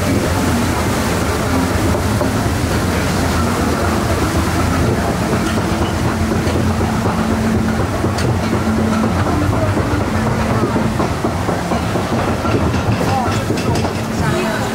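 Steady mechanical rumble and clatter of a ride boat riding the flume's conveyor lift, with a few faint clicks.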